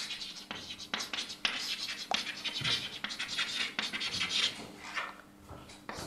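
Chalk writing on a blackboard: a quick run of scratching strokes and sharp taps, pausing briefly near the end.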